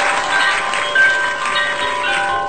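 Intro sting of shimmering chime tones: many held, bell-like notes overlapping, each entering and fading at its own time.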